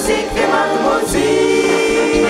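Wind band music with clarinets and a group of men singing, over a steady low beat; about a second in, the singing gives way to held chords.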